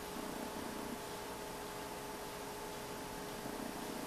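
Quiet room tone: a steady hum with hiss, and faint low murmurs in about the first second and again near the end.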